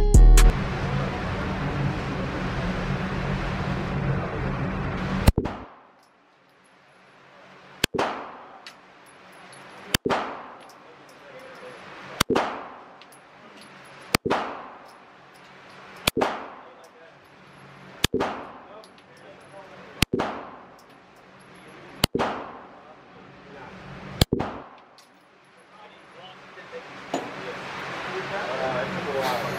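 Background music plays for the first five seconds and then stops. About ten sharp gunshots follow in an indoor range, evenly spaced about two seconds apart, each preceded by a sound that swells up to it.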